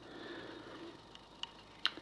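A few faint metallic clicks, the sharpest near the end, as a rusty clutch spring plate is lifted by hand off its coil spring.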